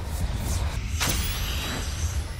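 Whoosh sound effects over a deep low rumble from an animated logo intro, with the strongest sweeping whoosh about a second in.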